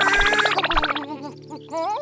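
Bouncy children's cartoon music with a steady beat that stops about a second in, followed by a cartoon baby dinosaur character's short wordless vocal sounds with a wavering, rising pitch.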